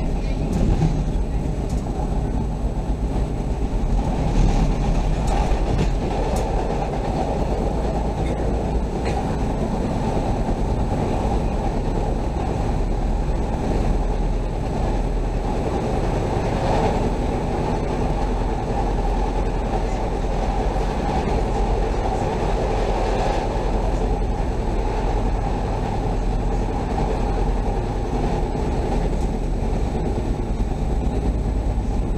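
Chicago CTA Orange Line rapid-transit train running along the track: a steady running noise of wheels on rails, with a slight swell a few seconds in.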